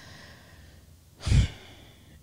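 A single short sigh blown into a close microphone about a second in, with a low pop of breath on the mic. Otherwise there is only faint room tone.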